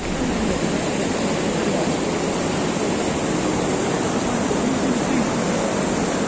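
Mountain river rushing over boulders in rapids: a steady, even rush of water.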